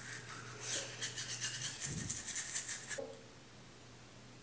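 Manual toothbrush scrubbing teeth in rapid back-and-forth strokes, the bristles wet but without toothpaste; the brushing cuts off abruptly about three seconds in.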